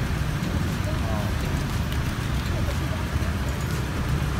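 Hot oil sizzling in a frying pan as egg-coated chicken sempol skewers go into it, over a steady low rumble of road traffic.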